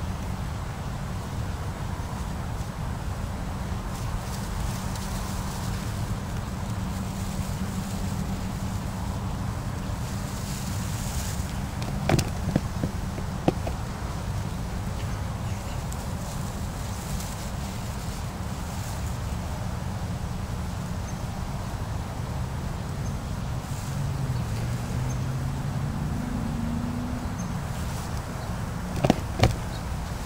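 A person blowing long breaths into a broom sedge tinder bundle to bring a char ember to flame, over a steady low rumble. A few sharp clicks come about twelve seconds in and again near the end.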